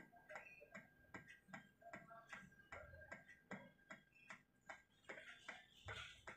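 Faint, regular ticking, a little over two ticks a second.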